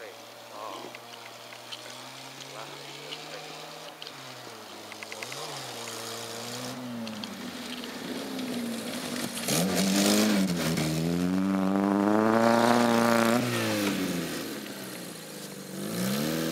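Small hatchback car's engine revving as it drives across a snowy field, growing louder as it approaches. The revs rise and drop several times with the throttle, loudest between about ten and thirteen seconds in, then ease off near the end.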